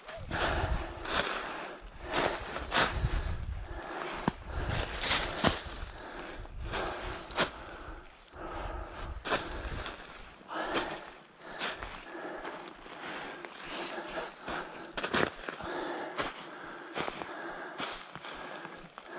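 Footsteps crunching and rustling through a thick layer of dry fallen leaves on a forest slope, one or two steps a second, with the walker breathing hard from the climb. A low rumble runs under the first half.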